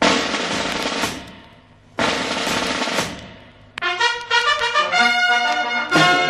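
Opening of a recorded military march: two snare drum rolls, each about a second long and dying away, then a brass band coming in with sustained chords about four seconds in.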